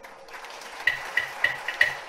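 Carnatic hand percussion playing a quick run of five ringing strokes about a third of a second apart, each with a deep thump under a bright pitched ring, starting about halfway through after a short lull in the music.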